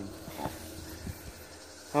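Quiet outdoor background: a faint steady hiss with a couple of soft clicks.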